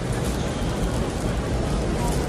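Steady background noise of a busy airport concourse, an even wash of sound with faint, indistinct voices in it.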